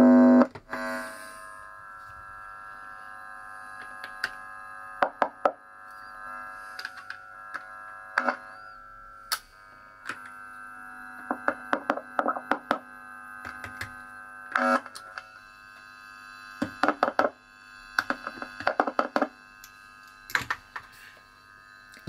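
A steady, held chord of tones runs under scattered sharp clicks and knocks of a screwdriver and hands working on an electric guitar's pickguard and pickups, with a louder knock right at the start.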